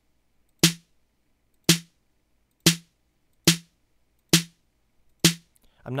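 Snare drum of Chrome Music Lab Song Maker's electronic drum kit, sounding once each time a snare note is clicked onto beats two and four. Six sharp hits, each dying away quickly, about a second apart but unevenly spaced.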